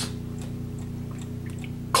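Key-wound mechanical mantel clock ticking steadily, a sign that its movement is running, with faint even ticks over a steady low hum.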